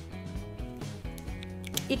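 Background music playing at a moderate level, a melody of steady notes changing every fraction of a second.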